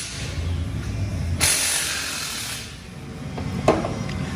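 Steady hissing noise in two stretches. The second stretch starts about one and a half seconds in, is louder, and fades out shortly before the end. A low hum sits under part of it.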